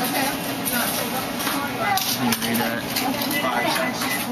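Indistinct chatter of several people talking, with a few light clicks mixed in.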